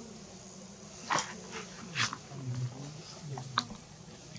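Baby macaque giving several short, high squeaks about a second apart.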